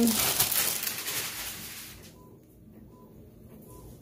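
Paper rustling as the cover sheet and sublimation transfer paper are pulled off a freshly pressed shirt on a heat press, fading out about halfway through.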